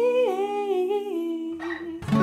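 A woman's wordless vocal line, hummed or sung on a vowel, stepping down in pitch over a ringing Epiphone acoustic guitar chord. The chord dies away about one and a half seconds in.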